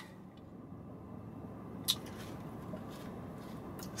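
A quiet pause inside a car cabin: faint, steady background hum, with a single small click about two seconds in.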